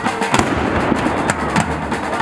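Black-powder guns firing: a loud bang about a third of a second in, then two more sharp cracks close together near the end.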